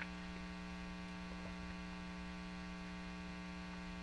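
Steady electrical mains hum in the recording: a low, unchanging drone with a thin buzz of overtones above it, and a faint click right at the start.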